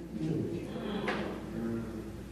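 A man's voice speaking softly at a pulpit microphone, with a short scrape or knock about a second in.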